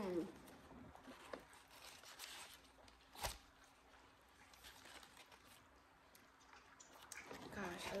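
A person chewing soft food (burger patties and cheese), with faint paper-wrapper rustles and one sharp click a little over three seconds in.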